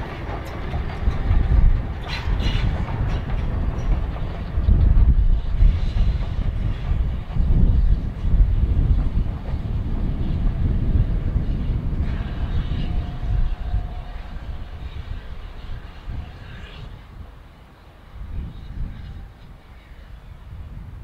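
A steam-hauled train of vintage carriages rolling past on the rails: a continuous low rumble of wheels with a few short clicks in the first seconds, fading away over the last few seconds as the train moves off.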